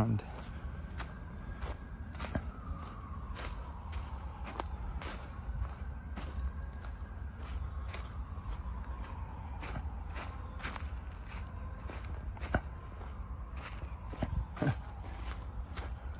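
Footsteps crunching through dry fallen leaves on a woodland path, about one step a second. A faint tone slowly falls and rises in the background.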